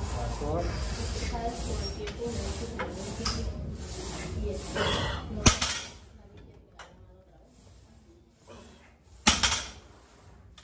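A single loud clank of a loaded barbell's iron plates against the floor near the end. Before it come several seconds of evenly repeating noise with voices, and a short laugh about halfway through.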